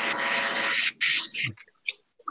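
Indistinct voice sounds over a video-call connection. About the first second is a breathy, hiss-like burst; it then breaks into short, clipped fragments that die away.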